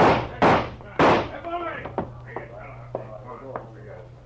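Three gunshots in quick succession, about half a second apart: a radio-drama sound effect of a policeman firing at a fleeing man.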